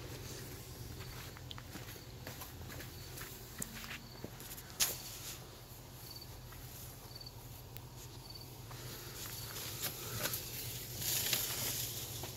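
Faint outdoor background: footsteps and shuffling as someone moves about, with scattered soft clicks, one sharper click about five seconds in, and a faint high chirp repeating at a steady pace through the middle.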